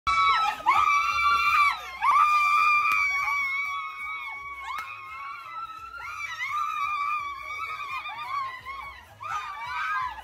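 Several girls and young women screaming with joy in long, high-pitched shrieks. The shrieks are loudest over the first three seconds and carry on more raggedly after that.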